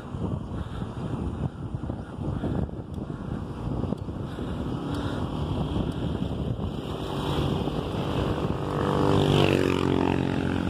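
Wind rushing over the microphone of a moving bicycle, with a motorcycle tricycle's engine coming up from behind and getting louder. It passes near the end, its pitch dropping as it goes by.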